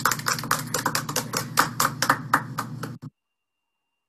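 A small group clapping hands, fast and uneven, which cuts off suddenly about three seconds in.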